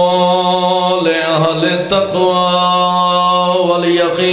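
A man chanting Arabic Quranic recitation into a microphone, holding long, drawn-out melodic notes, with a short pause for breath about two seconds in.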